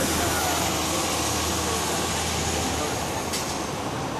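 Busy city street traffic noise, with an ambulance siren wailing faintly in the distance. A low engine hum runs under it and drops away about two-thirds of the way through.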